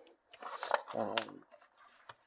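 A couple of light clicks and rustling from hands handling the plastic body of a small RC crawler truck, alongside a spoken 'um'.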